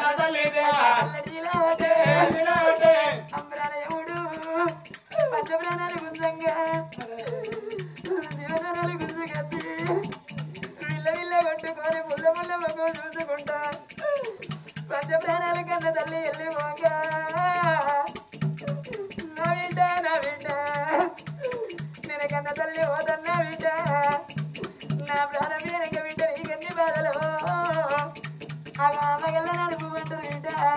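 Oggu Katha folk-narrative singing: a voice singing long melodic phrases with short breaks between them, over a steady rhythmic percussion accompaniment.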